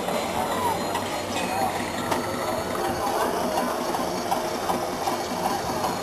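Crowd murmur: many people talking indistinctly at a distance over a steady background hum, with no single voice standing out.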